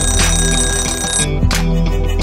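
Electronic workout-timer alarm ringing for about a second and a quarter over background music with a beat, signalling the end of a timed exercise interval.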